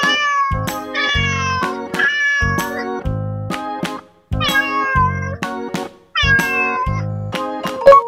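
Cat meow sound effects, about five falling meows, over a boogie-woogie music track with a steady beat.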